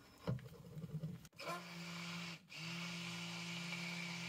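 Stick blender running in a glass bowl of melted soap oils, a steady motor hum that starts about a second and a half in, cuts out briefly, then runs on. A few faint knocks come first as the blender head is set in the bowl.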